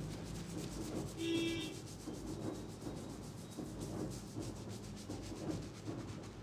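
Fingers rubbing and kneading shampoo lather on a scalp, a soft, irregular wet rubbing. A short pitched sound stands out about a second in.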